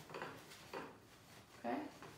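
Faint rustling and soft knocks, twice, as the wire stems of a bunch of artificial flowers are pushed down into a tall glass cylinder vase.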